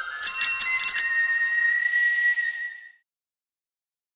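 Intro logo sting: a cluster of quick, bright ringing strikes over a held high tone that steps up in pitch, then fades out about three seconds in.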